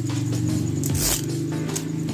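Background music with steady low tones, and about a second in a short rasp from the fastening of a cloth bike bag as it is worked by hand.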